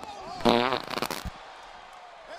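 Fart sound effect: one loud, fluttering burst about half a second in, breaking into short sputters and stopping just after a second.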